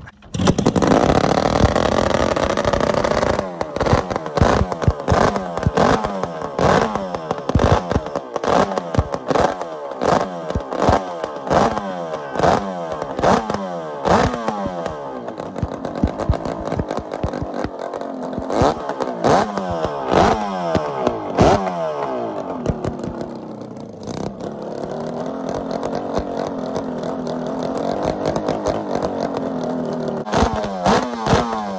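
Home-built 550cc four-cylinder two-stroke engine made from Kawasaki S1 parts, running on open carburettors and unsilenced header pipes. It catches straight away on its first start, then is blipped hard over and over to sharp, crackling revs, about one a second. After about twenty seconds it settles into a lumpy, wavering idle.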